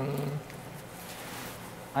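A man's voice holding one drawn-out syllable on a steady pitch for under half a second, then only faint steady background hiss and hum of the room.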